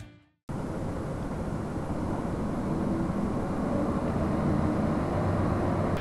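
Steady rushing outdoor background noise that starts abruptly about half a second in and grows slightly louder.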